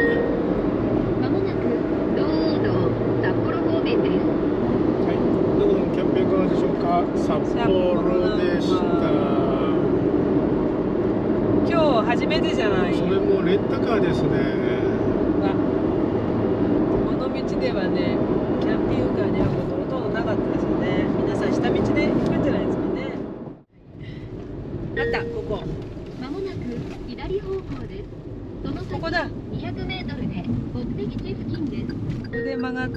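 Steady road and engine noise inside the cabin of a Daihatsu Atrai kei van cruising on an expressway. About 24 s in the sound cuts out briefly and comes back quieter as the van moves slowly along a city street.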